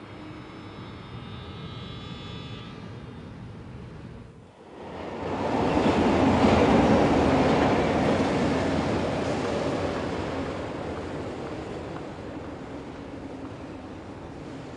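A metro train running through the station, its rumble swelling to a loud, even roar about five seconds in and then slowly fading. Before that, a lower rumble with a few faint steady high tones.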